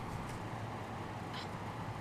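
Puppy whining faintly, with a short high-pitched yelp about a second and a half in.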